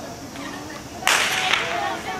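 Starting signal for a sprint start: a sudden sharp crack about a second in, followed by a noisy tail of almost a second with a second crack inside it.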